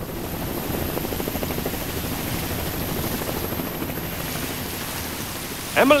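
Helicopter rotor chopping steadily, a cartoon sound effect of a helicopter flying and hovering.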